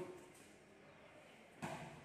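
Near silence, then one brief footfall about one and a half seconds in as a trainee lands from a jump.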